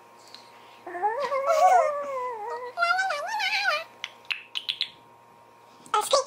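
A young child's voice making two drawn-out, wavering wordless sounds that slide up and down in pitch, followed by a few soft clicks.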